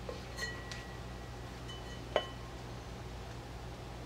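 A few light clinks of a glass pot lid against a small cookware pot as the lid is handled and lifted off, each ringing briefly; the sharpest comes about two seconds in. A steady low room hum runs under them.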